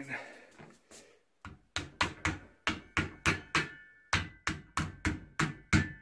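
Hammer tapping an end cap into the top of a square steel upright of a barbell support: about twenty quick, even strikes, some four a second, starting about a second and a half in, with a faint metallic ring under the later blows.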